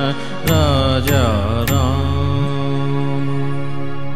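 Closing bars of a Hindi Ram bhajan: a wordless sung phrase that bends in pitch over three sharp percussion strokes. It settles about halfway through into a long, steady held harmonium chord.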